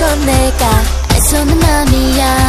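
A K-pop dance-pop song playing: a steady electronic beat with deep bass and drum hits under bright pitched melody lines.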